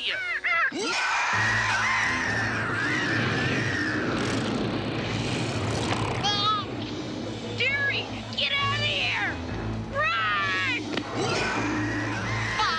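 Dramatic cartoon action music over a low, steady drone, starting about a second in. Over it a cartoon baby unicorn gives several wavering, bleating cries in distress from about halfway through as a monster's hand grabs it.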